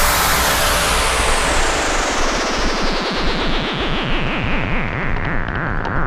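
Background music: a synthesized noise sweep that falls slowly and steadily in pitch, with a swirling, whooshing texture.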